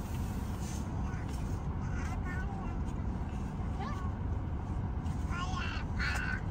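Steady low rumble of a car's cabin as the car moves slowly, with faint high voices a few times, most clearly near the end.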